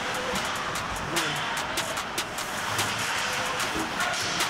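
Ice hockey rink sound during play: skate blades scraping and carving the ice in a steady hiss, with frequent sharp clacks of sticks and puck.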